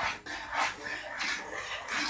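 A spoon scraping round a saucepan as thick cornmeal porridge is stirred, in repeated uneven strokes a few a second; constant stirring keeps the cornmeal from going lumpy.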